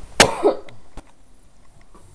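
A person coughs once, a short sharp burst with a throaty tail, about a quarter second in. A faint click follows about a second in.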